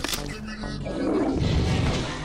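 A roar from an animated toilet-head character, over music and voices.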